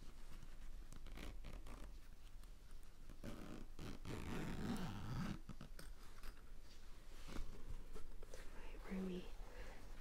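The zipper of a neoprene bag being run along its track for about two seconds, starting about three seconds in. Light handling rustles come before it, and a soft voice starts near the end.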